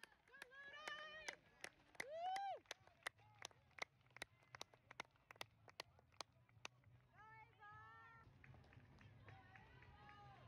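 Runners' footfalls crunching on a gravel path, about three a second, as runners pass close by. Voices shout in the first couple of seconds and again later.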